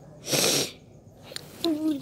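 A short, loud burst of breath from a person close to the microphone, about a quarter second in and lasting about half a second. Near the end a voice starts up with a wavering sound.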